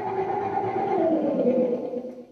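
Synthesizer guitar holding a sustained, several-tone synthesized sound that slides down in pitch about a second in and fades away at the end. It is a synthesized effect tried out as the rattling of a train's rails as the train makes a turn.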